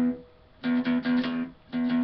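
Electric guitar picking quickly repeated notes on the low E string in short rhythmic phrases. Two bursts of notes about a second apart, each broken off by a brief pause.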